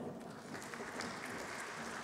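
Light, steady audience applause in a large hall.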